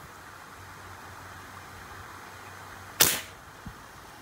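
A rubber-powered tiksay fishing spear being shot: one sharp snap about three seconds in, with a short decaying tail, over a steady faint background hiss.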